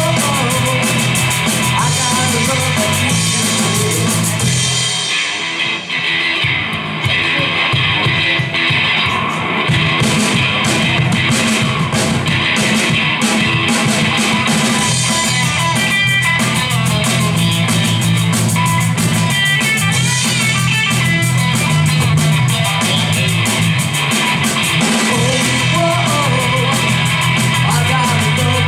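Live rock band playing: electric guitar, bass guitar and drum kit together, loud and continuous, dropping back briefly about five seconds in.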